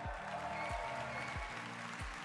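Large audience applauding over music with a steady deep beat, about three beats every two seconds.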